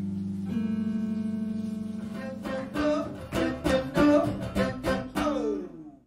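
Electric guitar played through an amplifier in a blues style: long held, ringing notes give way to a quick run of picked notes and chords. The run ends in a sliding drop in pitch before fading out.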